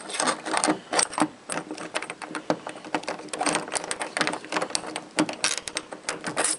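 Bathroom doorknob's privacy lock being worked from outside with a thin tool, metal clicking and rattling in quick, irregular clicks as the knob is jiggled.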